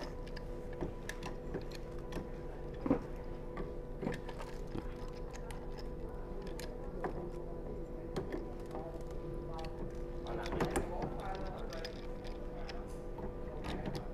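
Small clicks and knocks of a squeegee assembly being fitted to the rear bracket of a HiClean HC50B walk-behind floor scrubber while its mounting bolts are worked by hand, the sharpest knock about three seconds in. A steady low hum runs underneath.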